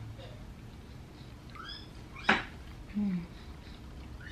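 A child's high voice faintly in the background, a single sharp click a little over two seconds in, and a short low hum near the end.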